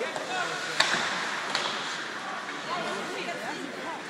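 Ice hockey arena crowd noise with scattered voices, and two sharp clacks from play on the ice, about a second and a second and a half in.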